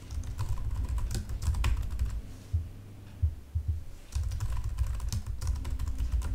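Typing on a computer keyboard: quick runs of keystrokes, with a short lull in the middle before a second run of typing.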